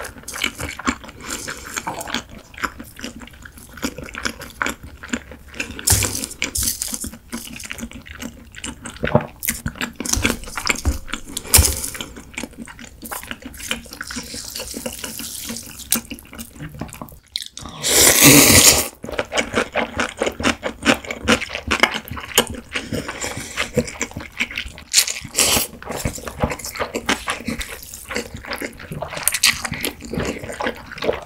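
Close-up eating sounds of Korean cold noodles (naengmyeon) in broth: wet slurping and chewing with many short clicks. One long, louder slurp comes about two-thirds of the way through.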